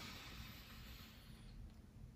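Near silence: faint room tone during a pause in speech.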